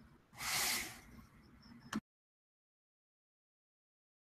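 A short, loud burst of breathy hiss about half a second in, then a sharp click just before two seconds. After the click the sound cuts off completely, as the stream's audio drops out.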